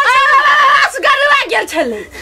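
A woman's voice, high-pitched and animated, in lively talk.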